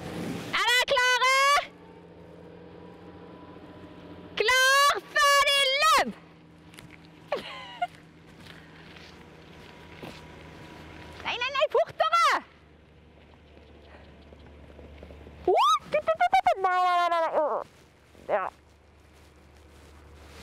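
Female voices shouting and yelling in high-pitched bursts, about four loud ones a few seconds apart, each a second or two long, as ponies gallop past.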